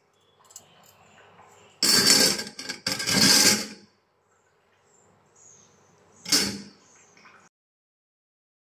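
Metal utensils scraping and clattering in a stainless steel bowl in the sink. There are two loud bursts about two and three seconds in, and a short one near the end.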